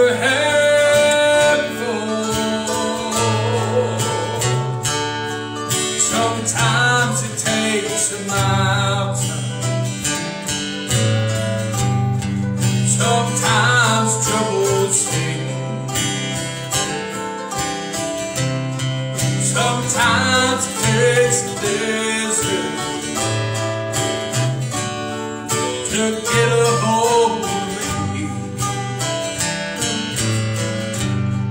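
Live country-gospel song: a man sings in phrases a few seconds apart over several strummed acoustic guitars.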